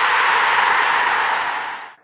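A steady wash of hiss-like noise closing the rock-music intro, with no notes left in it, fading out near the end.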